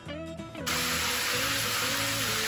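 Background guitar music, joined a little over half a second in by the loud, steady hiss of water spraying from an overhead rain shower head.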